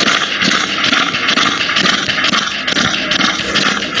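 Steady, rasping breath noise of an English bulldog with an overlong soft palate that vibrates in its airway as it breathes: brachycephalic stertor.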